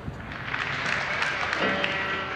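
A rushing, crackling noise, then guitar music comes in about one and a half seconds in, with notes held steady.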